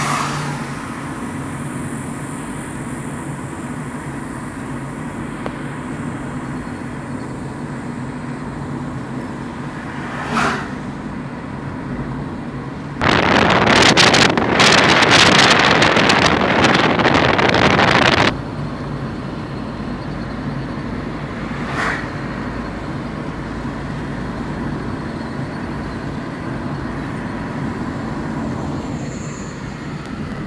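Steady engine and road noise heard from inside a moving vehicle at highway speed. About midway, a much louder wind rush starts suddenly, lasts about five seconds and cuts off. Two brief whooshes come earlier and later.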